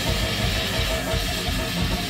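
Live band music: electric guitar and drum kit played together, with fast, closely packed drum hits under the guitar.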